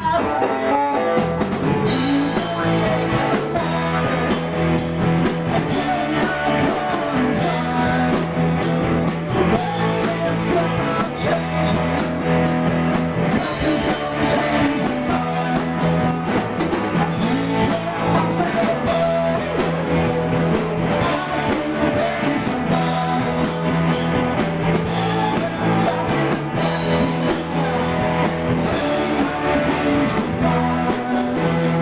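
Live rock band playing in a small room: electric guitars and drum kit keeping a steady beat, with a male lead vocal.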